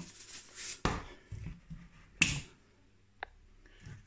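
Sea salt shaken from a plastic drum onto a bowl of chips: a faint hiss of grains, with a sharp click about a second in and a louder one just after two seconds.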